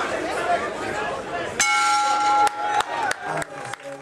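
Crowd chatter, then about a minute and a half in a boxing ring bell clanging several times in quick succession, signalling the end of the round.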